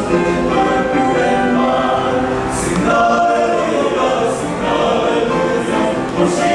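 Male choir singing in harmony, held notes moving from chord to chord, with the hiss of sung consonants now and then.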